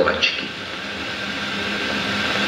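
Steady hiss with a faint low hum from an old film soundtrack played over loudspeakers in a hall.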